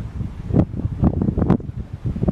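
Wind buffeting the microphone in irregular low gusts, with a few sharp clicks in the middle.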